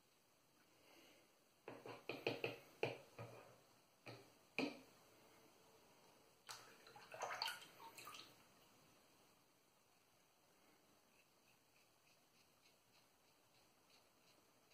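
Wilkinson Sword double-edge safety razor scraping through lathered stubble in short, crackly strokes. The strokes come in clusters about two and seven seconds in, with fainter quick strokes near the end.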